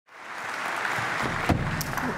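An audience applauding in a hall, with a single thump about one and a half seconds in.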